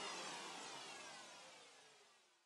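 Closing sound effect of a DJ mix: a falling electronic sweep with a long echo tail. It fades out to silence about one and a half seconds in.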